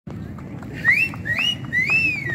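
Three high whistled notes, each sliding up and holding briefly, the last one falling away, over a steady low background rumble.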